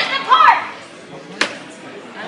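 Voices: a loud, high-pitched voice in the first half second, then quieter background chatter of a crowd, with a single sharp knock about a second and a half in.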